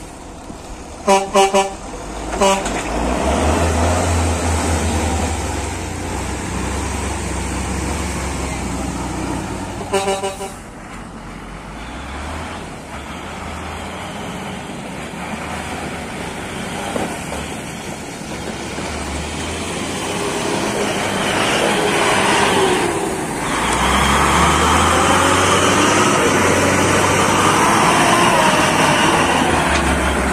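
Cargo truck horn sounding in a few short toots about a second in and again around ten seconds in, over a truck engine running. Near the end the engine rises and falls in pitch as the truck pulls through the mud under load.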